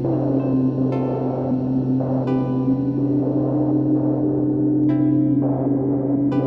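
Music: a sustained analog synthesizer tone that slides down in pitch just after the start and then creeps slowly back up as an oscillator knob is turned, over a steady low hum. Three ringing notes start about a second in, at about two seconds in, and near the end, and each fades away.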